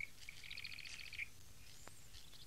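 Birds chirping faintly: a quick trill of high chirps lasting under a second, with a short chirp at the start and a brief high call near the end.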